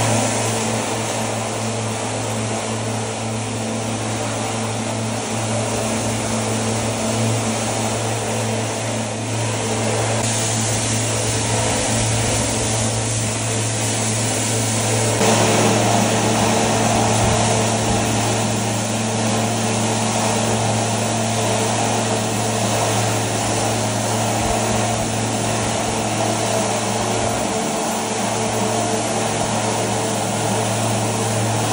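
Septic vacuum truck's pump and engine running steadily while the hose sucks out an aerobic septic tank, with the hiss of a water spray from a hose nozzle breaking up the thick crust. The drone grows fuller about halfway through.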